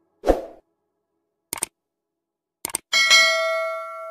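Subscribe-button animation sound effect: a short swoosh about a quarter second in, two quick mouse-click sounds, then a bright bell-like notification ding just before the three-second mark that rings on and slowly dies away.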